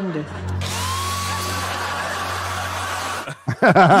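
Hair dryer switched on: its motor spins up with a short rising whine into a steady blowing hum and hiss, then cuts off abruptly a little after three seconds.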